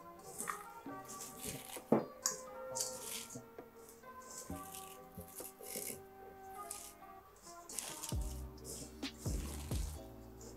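Background music with held notes, over the crackly squish of shredded white cabbage being kneaded and squeezed by hand with salt in a stainless-steel bowl to soften it. A low rumble comes in near the end.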